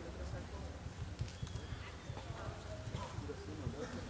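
Hoofbeats of a cutting horse and cattle moving on a dirt arena, a run of short dull thuds, with voices in the background.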